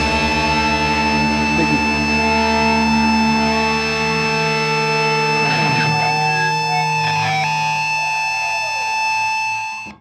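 Distorted electric guitars left ringing through their amplifiers after the final chord of a heavy metal song, the notes held as a steady drone of feedback with a few slides in pitch. The sound fades out quickly at the very end.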